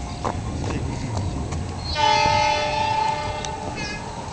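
Horn of a CC 206 diesel-electric locomotive (CC 206 13 88) heading an approaching passenger train: one steady blast of about two seconds, starting about two seconds in.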